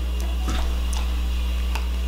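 A steady low hum with a few faint, sharp clicks scattered across it.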